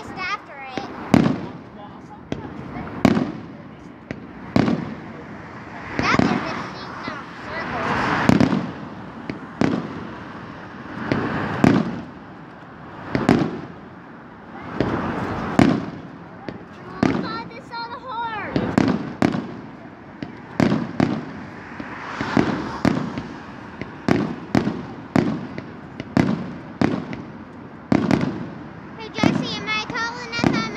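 Aerial fireworks shells bursting one after another, a sharp bang every second or two.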